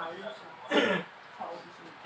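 One short, loud cough from a person, falling in pitch as it ends, about a second in.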